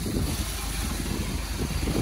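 180-horsepower MerCruiser inboard engine idling steadily, a low rumble, while it runs on a garden-hose flush hookup with the boat out of the water.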